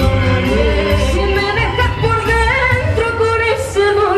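Live dance band playing with a steady bass beat, a man and a woman singing together over it.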